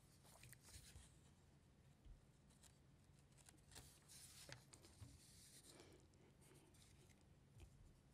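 Near silence, with faint intermittent rustling of paper sheets being handled and shuffled at a lectern.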